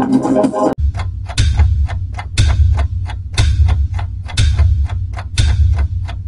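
Electronic music cuts off under a second in, replaced by a countdown-timer sound effect. It is clock-like ticking with a heavy low thud once a second.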